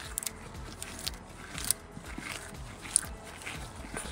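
A compressed-gas tank's dual-gauge regulator knob being turned to feed air into the engine's high-pressure oil system: a few faint clicks over a quiet, low background.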